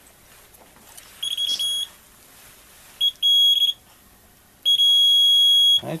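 Bondmaster bond tester's alarm beeping at one high, steady pitch as its probe passes over drilled holes in a Kevlar composite panel, each beep a flaw indication. A short stuttering beep comes about a second in, two more just after the middle, and one long beep of about a second near the end.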